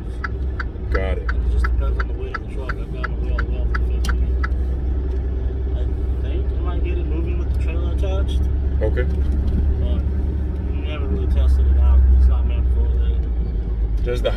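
Steady low drone of a moving semi-truck heard inside its cab, engine and road rumble together, with a rapid ticking about three times a second during the first few seconds and faint voices in the background.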